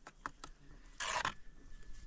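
A trowel scraping clay mortar out of a basin: a couple of light clicks, then one short scrape about a second in.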